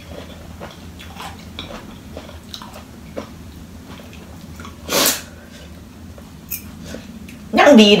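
A fork and spoon click softly on a plate while someone eats, with chewing. About five seconds in comes one short, loud, noisy burst.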